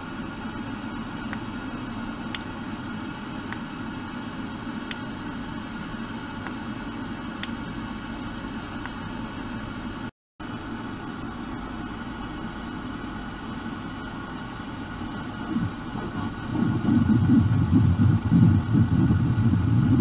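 A handheld sonic device running with a steady low buzz and faint ticks about every second. Near the end the buzz becomes louder and rougher.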